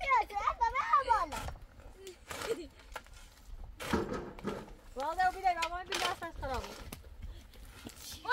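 A high-pitched voice calls out twice, at the start and about five seconds in, between a few short scrapes of a steel shovel digging into dry, stony earth.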